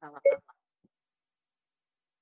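A half-second clipped fragment of a woman's voice right at the start, then the sound cuts to dead silence, the stream's audio dropping out.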